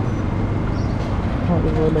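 City street traffic: a steady low rumble of passing vehicles at an intersection, with a man's voice briefly saying "Oh, man" near the end.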